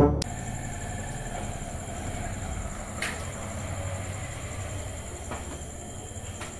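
A steady low rumble with a thin, high, steady whine above it, and one faint click about three seconds in.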